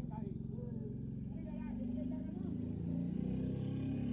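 Low steady hum of a car idling, heard inside the cabin, growing slightly louder toward the end.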